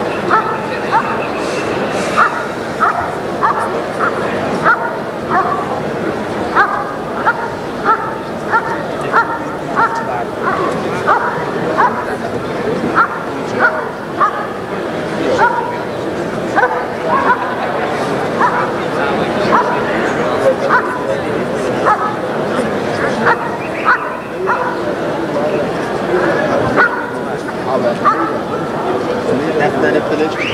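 German Shepherd Dog barking steadily and rhythmically, about one and a half barks a second, at a helper standing in a hiding blind. This is the bark-and-hold of the Schutzhund protection phase: the dog holds the helper at the blind by barking, without biting.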